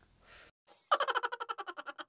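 A short transition sound effect: a rapid train of pitched pulses, about ten a second, starting about a second in and fading away.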